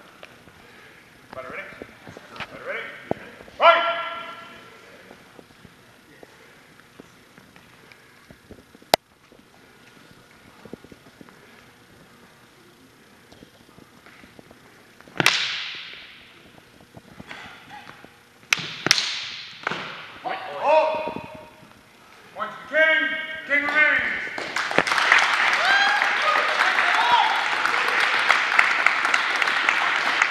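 Longswords clashing in a few sharp strikes, each with a short ring, among shouts in a large hall. In the last few seconds comes a dense, steady crowd noise with voices.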